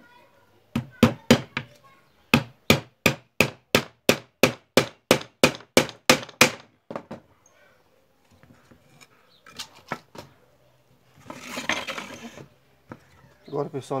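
A hammer driving small nails into pallet-wood slats: about twenty sharp strikes, three to four a second, with a short pause after the first few. A brief scrape of wood follows near the end.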